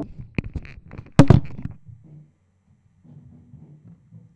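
Clicks and knocks from a handheld microphone being handled, the loudest about a second in, dying away after two seconds into a faint low pulsing.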